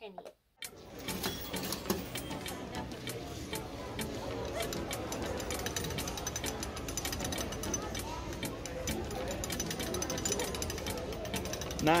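Hand-cranked souvenir penny press being turned, its gears and rollers grinding with a rapid run of clicks as the penny is rolled flat. It starts about a second in.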